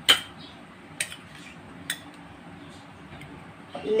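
Three sharp kitchenware clinks about a second apart, the first the loudest, with a woman's voice starting just before the end.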